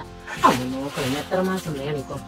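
A person speaking over background music, with a short, loud falling swoop about half a second in.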